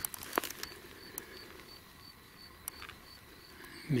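Footsteps crunching through dry brush and leaf litter, with a few sharp crackles of twigs, the loudest near the start. Behind them an insect chirps steadily, about three short high chirps a second.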